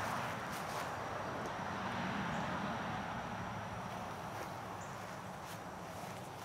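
Soft footsteps and rustling on a grass lawn, a few light scuffs over a steady outdoor background hiss with a faint high steady tone.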